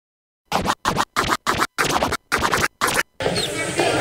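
DJ scratching a record: about eight short scratch bursts, each cut off sharply into silence, roughly three a second. A little before the end they give way to a continuous background sound.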